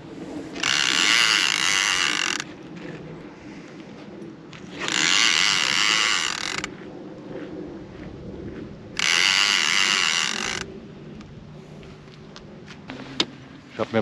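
A baitcasting fishing reel's drag ratcheting out line in three bursts of about two seconds each, as a hooked catfish pulls against it.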